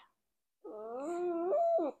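A small dog giving one long whining howl, wavering in pitch for just over a second and rising at the end.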